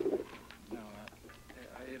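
A man's halting, stammering speech, opening on a drawn-out hummed 'uh', with a couple of faint light clicks.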